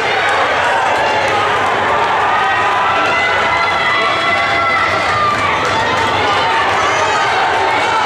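Spectators shouting and cheering the runners on, many voices overlapping at a steady loud level.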